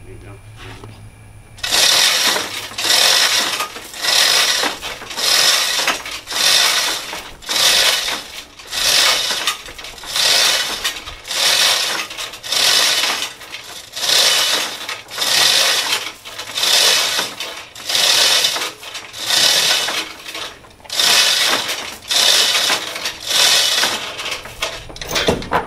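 Hand chain hoist being pulled hand over hand under a heavy load: the chain rattles and clinks through the hoist in steady strokes, a little more than one a second, starting about two seconds in.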